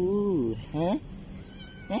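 Domestic cat meowing: one meow of about half a second that falls in pitch at the end, then a short rising meow.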